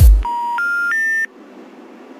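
A dance track's last bass drum hit dies away, then three steady telephone beeps step upward in pitch, each about a third of a second long. They are the special information tones that a phone network plays before a recorded message such as 'the number you have dialed is not in service'.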